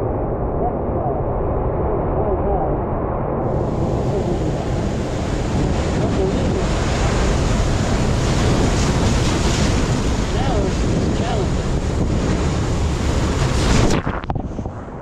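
Ocean surf breaking and washing over rocks, a steady heavy rush, with wind buffeting the microphone.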